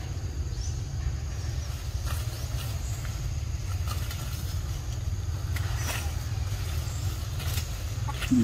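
A steady low rumble with a few faint rustles and snaps as monkeys climb through leafy branches.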